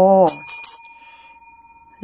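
A metal dome desk bell struck a few times in quick succession, its high, bright ringing tone fading slowly.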